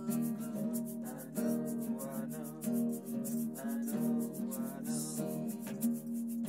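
Nylon-string classical guitar strummed in a steady rhythm, with a man singing over it.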